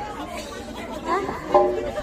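Indistinct talking and chatter, with a steady held note coming in near the end.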